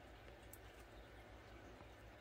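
Near silence: room tone, with one faint tick of a fingernail picking at the plastic sheath on a watercolor brush's ferrule about half a second in.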